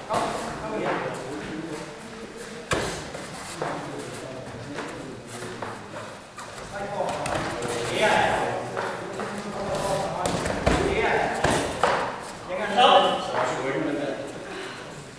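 Kickboxing sparring bout: dull thuds of kicks and punches landing on padded gloves and guards and of feet on the foam mat, echoing in a large hall, among shouting voices that are loudest near the end.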